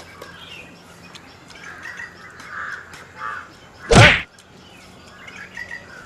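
A crow caws once, loud and harsh, about four seconds in, over faint bird chirping.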